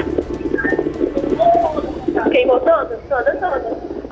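A woman's voice over a phone line, high-pitched and wavering, with no words made out.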